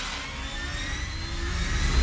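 Trailer sound-design riser: a dense noisy swell over a low rumble, with faint pitches sliding upward, growing louder through the second half.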